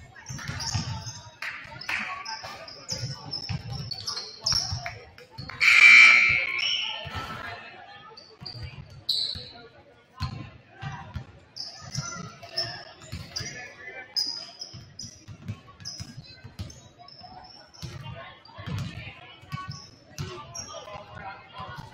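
Several basketballs bouncing on a hardwood gym floor, irregular thumps several times a second in a large echoing gym, with short high squeaks over them. A loud noisy burst stands out about six seconds in.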